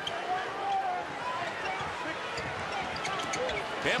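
Basketball being dribbled on a hardwood court over a steady murmur of arena crowd noise.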